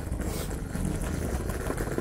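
A scooter's small wheels rolling over stone street paving: a steady low rumble with a fine rattle, and a brief hiss about half a second in.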